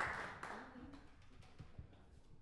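Small audience applause dying away within the first second, followed by a few faint low knocks.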